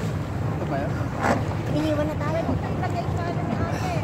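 Motorboat engine running with a steady low hum, with wind buffeting the microphone and water washing around the inflatable banana boat. One brief knock or splash comes about a second in.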